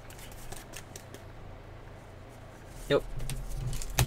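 Faint soft clicks and rustles of cardboard trading cards being slid and flipped through by hand.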